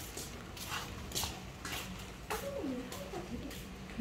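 Short, irregular rustles of flower stems and leaves being handled, with a person's voice briefly about halfway through.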